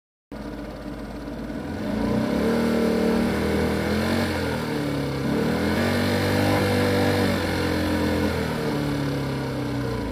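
A vehicle engine running and revving, its pitch rising and falling in steps; it starts abruptly and holds at a steady loud level.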